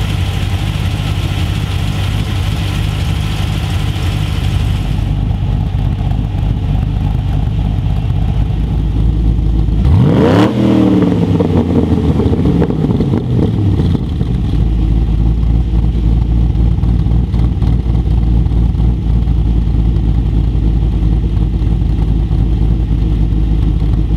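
GM LS V8 with a VCM9 camshaft idling through its exhaust, with a noticeable lope that is not rough. About ten seconds in the throttle is blipped once. The revs rise sharply and then settle back to idle over a few seconds.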